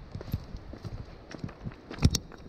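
Footsteps on a loose stony path: irregular clicks and clatter of stones shifting underfoot, a few a second.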